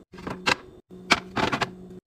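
Glass food-storage containers with wooden lids being handled and set down on fridge shelves and a stone counter: a run of sharp clacks and taps, the loudest about halfway through, over a low steady hum.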